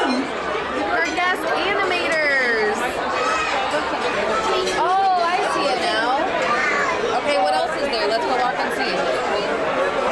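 Restaurant dining-room chatter: many diners talking at once, their voices overlapping into a steady babble with no single speaker standing out.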